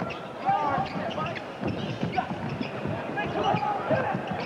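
A basketball being dribbled on a hardwood court, a string of short bounces, with voices in the arena behind.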